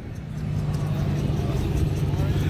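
A steady low engine hum, like a motor vehicle running at idle, with faint voices in the background.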